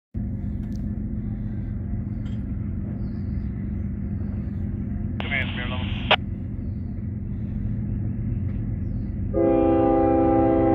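Steady low rumble, then about nine seconds in a Union Pacific diesel locomotive's air horn sounds a loud, steady chord of several notes as the train approaches.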